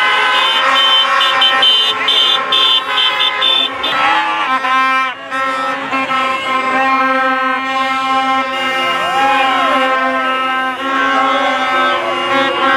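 Many horns blowing at once in a celebrating street crowd: a loud, continuous wall of overlapping steady horn tones, with some pitches wavering up and down. Plastic fan trumpets and car horns are among them.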